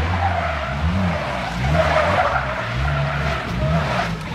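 Three-wheeled Polaris Slingshot doing donuts: its rear tyre squeals on the asphalt while the engine revs up and down several times.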